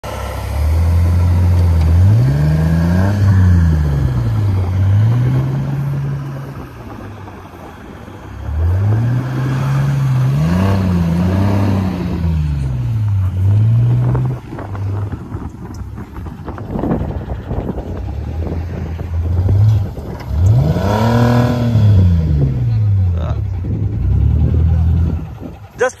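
Jeep Wrangler TJ engine revving hard under load on a tow strap, straining to pull a stuck semi truck out of snow and failing. It comes in three long pulls, each climbing in pitch and falling back.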